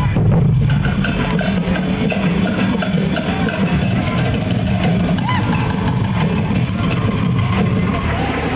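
Loud, steady drum-driven music accompanying a street dance, with shouting voices rising and falling over it.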